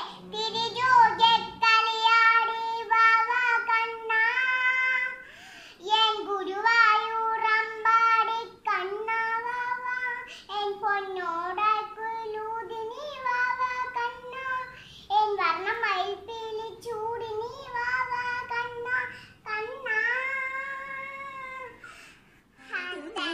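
A young girl singing solo, unaccompanied, in phrases of long held notes with short breaks between them.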